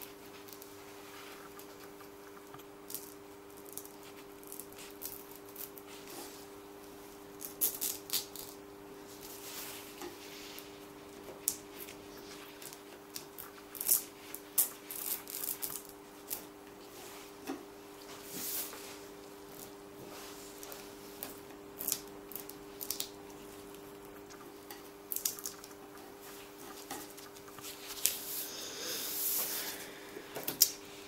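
Thin plastic sheet and plastic glove crinkling and crackling in irregular bursts as a dried piped-icing outline is peeled off the sheet. A steady hum runs underneath.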